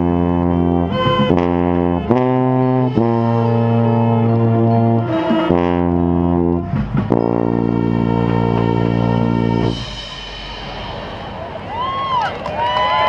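Marching band brass and winds playing loud sustained chords in short phrases, ending on a long held chord that cuts off about ten seconds in. Crowd applause and cheering follow, with whistling near the end.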